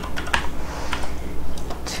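Computer keyboard keys being typed: a run of irregular keystroke clicks over a steady low hum.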